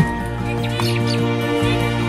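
Background music with a few short high calls of zebra finches about a second in.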